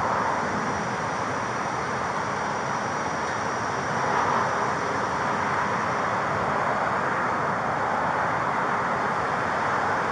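Steady rush of outdoor traffic noise picked up by a police body-worn camera microphone, with no distinct events.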